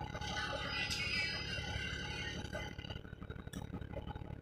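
Cabin sound aboard a 2008 Van Hool A300L bus: its Cummins ISL diesel engine runs steadily, with a higher whine over it for the first two seconds or so.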